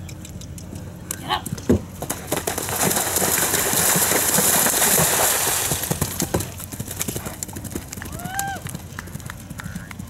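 Hoofbeats of a galloping Oldenburg gelding event horse on turf, with one heavier thud just before two seconds in, and a louder rush of noise in the middle as it passes close. A short voice call comes near the end.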